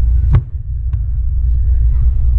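A single knock about a third of a second in, then a faint click, as a hand works a round hatch cap on a boat's carpeted deck, over a steady low rumble.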